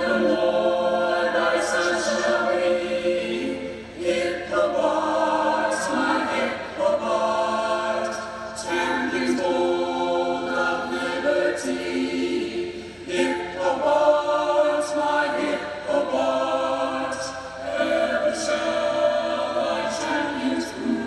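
Mixed men's and women's college choir singing unaccompanied, holding sustained chords in phrases a few seconds long.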